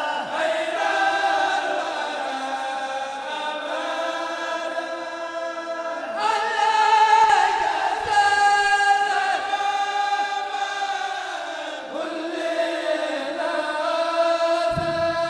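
Kourel of men chanting a Mouride xassida together without instruments, holding long drawn-out notes that step from pitch to pitch. The chant swells louder around the middle.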